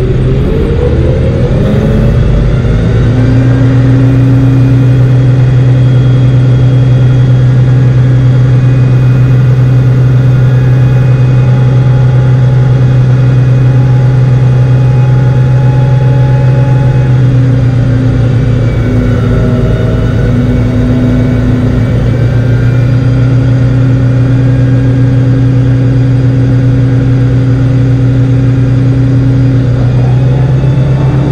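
Semi truck's diesel engine revving up over the first few seconds, then held at a steady raised speed while the end dump trailer's hydraulic hoist lifts the bed to tip the load.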